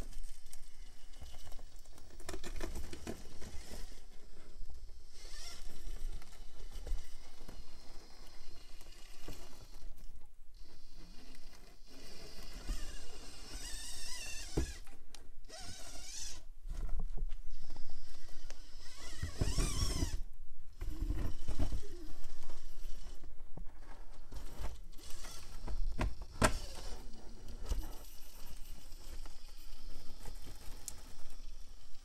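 Traxxas TRX-4M micro RC rock crawler climbing foam rocks: the small electric motor and geartrain whine, rising and falling in pitch with the throttle, loudest about two-thirds of the way through, over tyres scrabbling and the chassis clattering on the rock.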